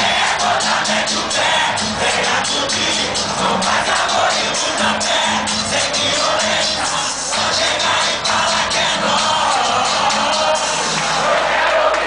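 Brazilian funk music playing loud over a venue's sound system, with a steady beat and a repeating bass note, and crowd noise underneath.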